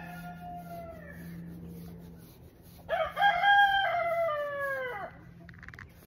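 A rooster crowing twice. The first crow trails off and falls in pitch over the first second and a half. A louder full crow starts about three seconds in, holds for about two seconds and drops away at the end.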